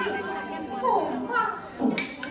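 A Gezai opera performer's voice delivering a stylised line, its pitch sliding, with a falling glide about a second in.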